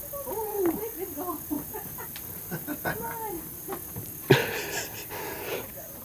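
Footsteps and light knocks on a wooden deck, with quiet talk in the background. A sharper knock about four seconds in is followed by a brief rustle.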